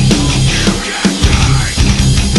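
Loud, dense hard rock music, with a short dip in the bass about a second in.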